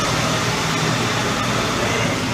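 Steady mechanical hum over a constant background rush, unchanging throughout.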